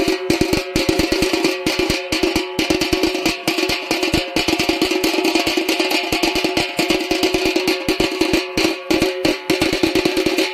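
Music with rapid, continuous drumming over a steady held tone.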